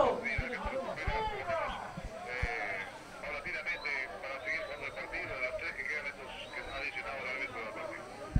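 Faint voices of football players and spectators, shouts and calls overlapping on an open pitch, with a few soft knocks in the first half.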